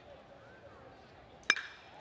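A metal baseball bat striking a pitched ball: one sharp ping with a short ring about a second and a half in, solid contact that sends a deep fly ball out for a home run. A faint crowd murmur runs underneath.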